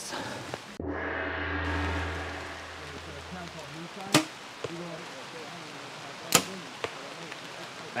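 Bow shot: a sharp crack as the string is released about four seconds in, followed by a second sharp crack about two seconds later. Before the shot there is a steady low hum for about three seconds.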